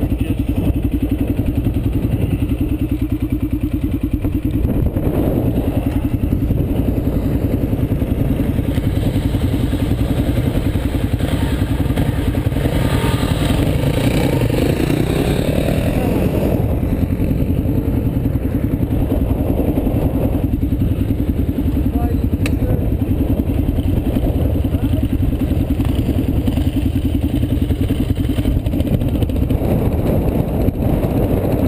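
Dirt-bike engines idling and running at low revs, a steady low engine sound, with a brief lift in the engine sound about halfway through.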